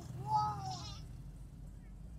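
A short bleating call, then a longer one that rises and falls over about two-thirds of a second, heard over the steady low drone of a moving car's engine and tyres from inside the cabin.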